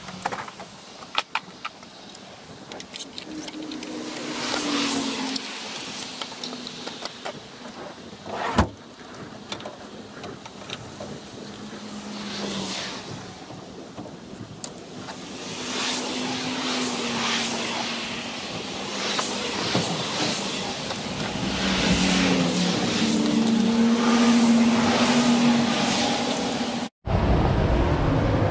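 Knocks, clinks and rattles of tools and gear being handled and unloaded from the back of a van, with one sharper knock about a third of the way through.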